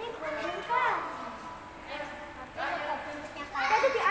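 Children's voices talking and calling out in short high-pitched bursts, three times, with no other sound standing out.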